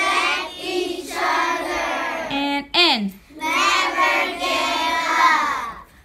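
A group of young children singing together in short phrases of about a second each, with one loud voice sliding steeply down in pitch about three seconds in.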